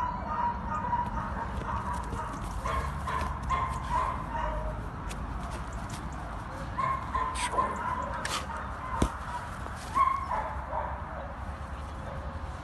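Greyhound whining and yipping: a thin high whine that breaks off and returns several times. A low wind rumble on the microphone runs underneath.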